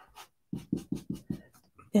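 Round ink-blending brush scrubbing ink through a plastic stencil onto cardstock, in a quick run of about six short, even strokes.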